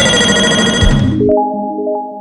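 Intro jingle sound effect: a loud, bright chime with many ringing tones. Just past halfway it changes to a softer chord of several held notes that fades away.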